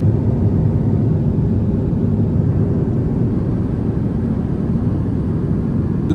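Airbus A350's Rolls-Royce Trent XWB turbofan engine in cruise flight, heard from inside the cabin beside the wing as a steady, low rumble.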